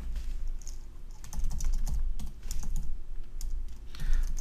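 Computer keyboard being typed on: a run of irregular keystroke clicks as a terminal command is entered, over a low steady hum.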